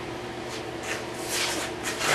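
Soft shuffling footsteps and rustling on a concrete floor, a few scuffs loudest about a second and a half in, over a steady low electrical hum.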